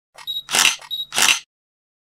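Sound-effect camera shots: a short high focus-confirm beep followed by an SLR shutter click, twice in quick succession within the first second and a half.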